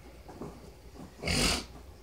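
A large dog gives one short, sharp snort through its nose, a little past a second in.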